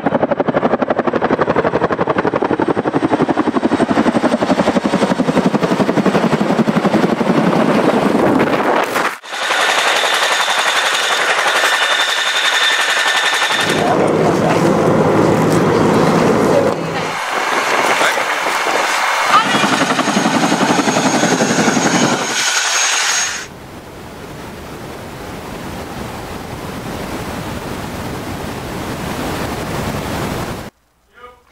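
Tandem-rotor CH-47 Chinook helicopter: loud, rapid rotor chop with engine and turbine noise, and a high whine in some stretches. The sound changes abruptly several times and drops to a quieter steady rush for the last several seconds.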